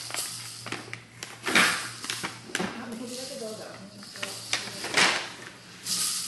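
Shopping bags and plastic packaging rustling, crinkling and knocking as items are handled, with louder swishes about one and a half seconds in and again near the end.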